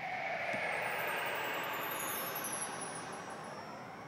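A vehicle passing by. Its noise swells, then fades over a few seconds, with a faint whine that slowly falls in pitch as it goes.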